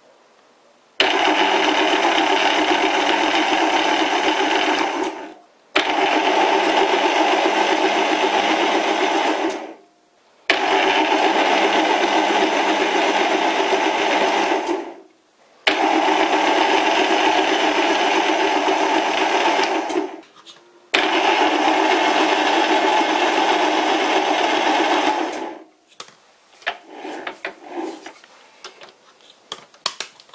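Small metal lathe cutting a screw thread under power: the motor and gear train run steadily for about four and a half seconds at a time, five times over, each run starting sharply and dying away as the machine is stopped and run the other way. Near the end only scattered light knocks and clicks of handling remain.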